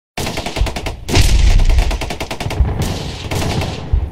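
Channel logo intro sound effect: a rapid train of sharp cracks, about ten a second, with a heavy low boom about a second in.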